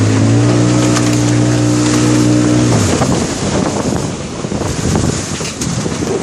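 Small boat's engine running at a steady high pitch, cutting out suddenly about three seconds in. After that, rushing and splashing river water with scattered knocks and wind on the microphone.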